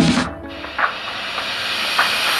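Background music breaks off a fraction of a second in and gives way to a hiss that slowly grows louder.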